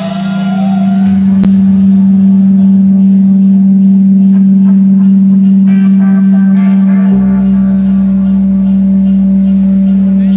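Amplified electric guitar and bass holding one loud, steady droning note, with no drums; a deeper bass layer comes in about seven seconds in.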